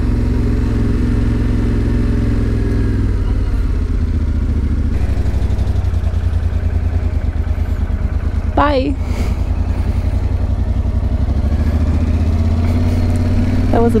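Yamaha Ténéré 700's parallel-twin engine running at low revs as the motorcycle rolls slowly, a steady low drone that turns into a more distinct throb about a third of the way in. A brief higher sound bends in pitch about halfway through.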